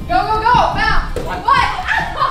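Several women shouting and cheering in high, excited voices that overlap, as a relay race starts.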